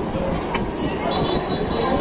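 Restaurant dining-room noise: a steady hum of background chatter and room sound, with a short click about half a second in.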